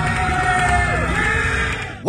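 Intro music with a steady heavy bass and a vocal line, cutting off abruptly just before the end.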